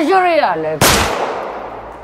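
A single loud, sharp bang about a second in, dying away over the following second.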